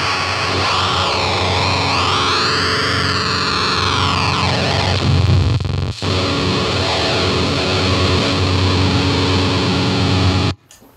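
Telecaster bar chord through a Mantic Flex fuzz pedal into a 1964 blackface Champ amp, with the pedal's focus control all the way up: thick, glitching fuzz that splatters on the chord. Its pitch warbles up and down in the first few seconds. The sound cuts out briefly about six seconds in, then the fuzz rings on.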